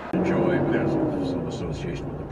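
A person's voice starting suddenly just after the start, a drawn-out sound whose pitch falls slowly over about a second and a half, over a low rumble of road noise.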